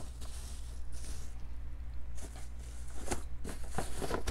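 Soft handling sounds of plastic-wrapped toy boxes being moved on carpet, with a few light taps late on, over a steady low hum.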